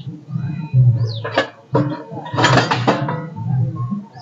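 Music with a plucked-string sound, over which short, high, falling bird chirps come a few times, and a brief noisy rustle a little past halfway.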